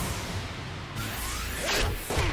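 Anime fight sound effects: a sharp sting and a dramatic whoosh, a rushing noise that sweeps down about a second in and surges again near the end, with score music under it.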